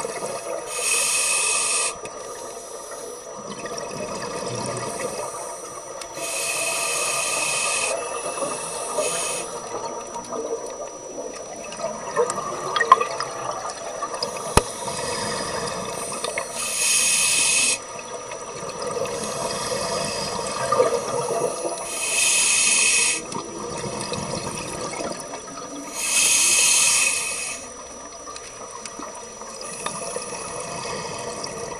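Scuba divers breathing through regulators, heard underwater: exhaled bubbles rush out of the exhaust in five loud bursts a few seconds apart, with gurgling bubble noise between them.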